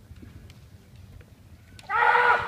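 Low background hum with a few faint taps, then near the end a kendo fencer's kiai: a sudden, loud, pitched shout as the fencers close in.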